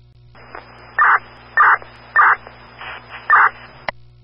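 A radio transmission keyed open with no words, carrying four short, harsh bursts about half a second apart. It closes with a click near the end.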